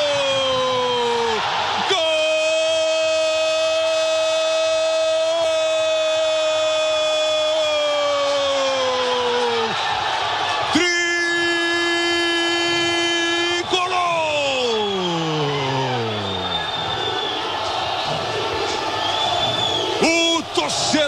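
A Brazilian football commentator's drawn-out goal cry, a 'Gooool' held on one note for about eight seconds. It is followed by a second shorter held call and a long falling slide, over crowd noise.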